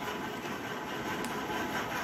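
Steady background noise, an even hiss and hum with no distinct events.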